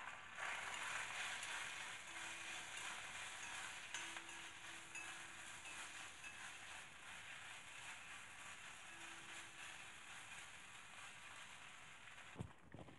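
Shredded chicken breast frying in a dark pan: a faint, steady sizzle that grows slightly fainter, with a few light spatula stirs.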